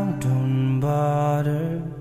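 Acoustic ballad cover music: a voice holding long, steady sung notes that slide from one pitch to the next, softening near the end.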